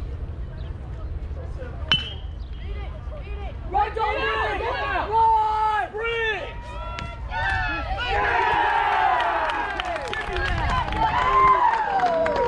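A metal baseball bat hitting a pitched ball about two seconds in: a sharp crack with a brief high ring. Spectators and players then shout and cheer, growing louder through the last few seconds.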